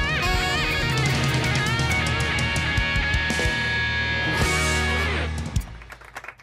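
Live band with drum kit playing the closing bars of an up-tempo trot song, ending on a final accented hit near the end.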